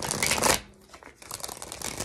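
A tarot deck shuffled by hand: a loud rush of cards at the start, then after a short lull a quieter run of quick card flicks from a little past one second in.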